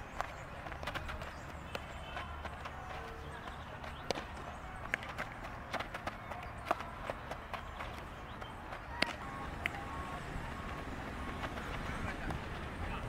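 Baseball infield practice: scattered sharp knocks of a bat hitting ground balls and balls snapping into gloves, about a dozen over the stretch. The loudest come past halfway. A low steady rumble lies underneath.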